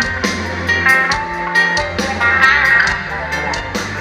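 Amplified live band music with guitar over a steady drum beat and bass, heard from within the audience.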